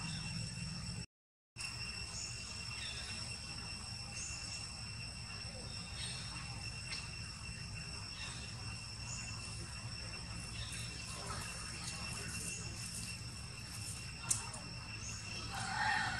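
Steady high insect drone at several fixed pitches over a low rumble, with small faint chirps scattered through. The sound cuts out completely for about half a second a second in. Near the end there is a sharp click, then a brief louder call.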